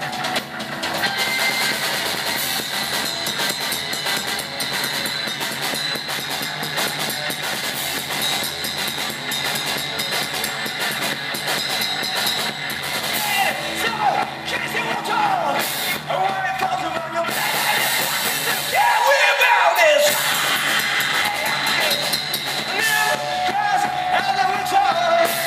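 A live three-piece noise-rock band playing loud: distorted electric guitar, bass guitar and drum kit. The low end drops away for a moment about three-quarters of the way through.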